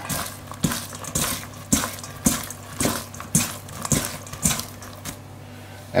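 Shredded cabbage being tossed by hand in a stainless steel bowl: a rustling knock about twice a second, stopping a little after the middle.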